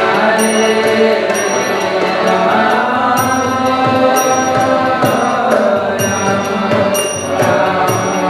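Kirtan: devotional group chanting over a sustained harmonium, with a high metallic ring recurring about once a second as the beat is kept.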